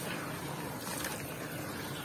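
Hands swishing and squeezing soaked sand-cement lumps in a plastic tub of muddy water: a steady soft sloshing, with no sharp crumbling cracks.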